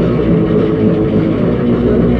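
Hardcore punk band playing live: loud distorted electric guitar and bass over drums, in a muffled audience recording with little treble.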